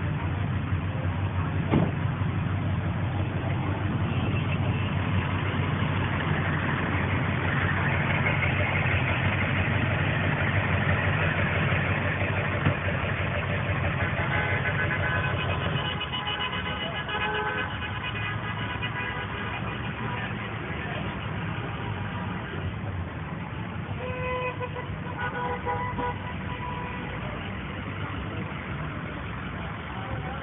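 Traffic noise from a slow line of pickup trucks with engines running. From about halfway in, several vehicle horns honk at different pitches, on and off and overlapping.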